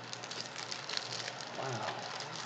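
Packaging rustling and crinkling as a small box is opened by hand, a rapid scatter of small crackles and clicks.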